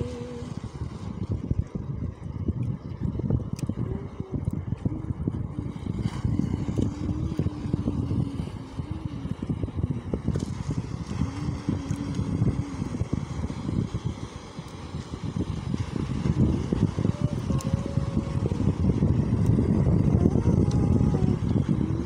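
Wind buffeting the microphone over choppy sea and surf: a dense, uneven low noise that grows louder towards the end. A faint voice comes through now and then.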